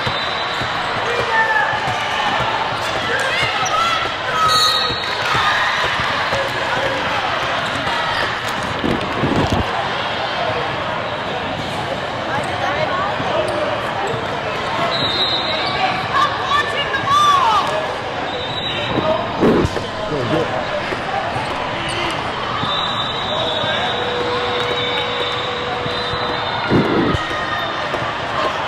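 Basketballs bouncing on a hardwood court among a crowd's chatter and shouts, with a few sharper knocks of the ball. The sound is from a large hall holding several games at once.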